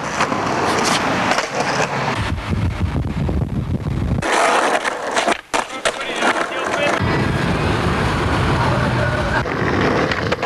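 Skateboard wheels rolling on concrete, with sharp clacks of boards hitting the ground. The sound changes abruptly about four and seven seconds in, as different sessions are cut together.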